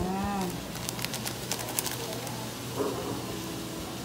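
A pot of sliced hotdogs simmering in milk, with scattered small crackles over a low steady hum. A short hummed voice sound comes at the start and another near the three-second mark.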